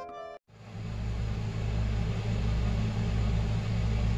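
Store background music cuts off abruptly about half a second in, followed by a steady low hum with a rumble that runs on unchanged in the kitchen.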